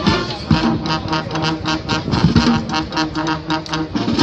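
Youth wind band playing a marching tune, with brass and woodwinds carried over a steady, even drum beat.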